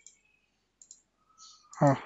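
A few faint computer mouse clicks, one right at the start and another just under a second in.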